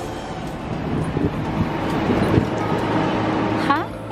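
Busy city street ambience at a sidewalk café: traffic noise and the chatter of diners and passers-by. Near the end a short voice rises sharply in pitch.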